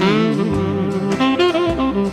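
Tenor saxophone playing a solo fill in wavering, heavy vibrato, then a few held notes, with the backing band underneath.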